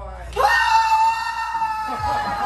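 A woman's single long, high-pitched scream, starting about half a second in and held at one pitch.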